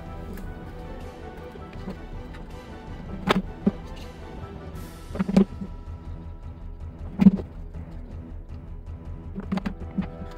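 Background music with sustained tones, broken by four or five sharp knocks spread through it, the loudest a little past the middle: hard plastic traffic cones knocking against the asphalt road as they are set down and picked up.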